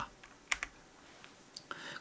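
A few faint, separate clicks in a pause between sentences, followed by a soft breath-like hiss just before speech resumes.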